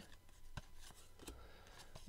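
Near silence with faint rustling of cardboard trading cards being slid through the hands, with a few light ticks.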